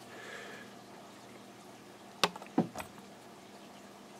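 Quiet room tone with two short, sharp clicks a little over two seconds in, about a third of a second apart.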